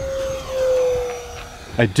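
Electric ducted fan of an Arrows F-86 Sabre RC jet at full throttle, making a steady whine with a rush of air. It swells as the jet passes low, then drops slightly in pitch and fades.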